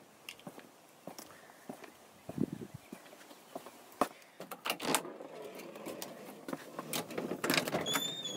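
Footsteps, then the clicks and knocks of a glass storm door's handle and latch about halfway through, and a front door being unlatched and swung open near the end.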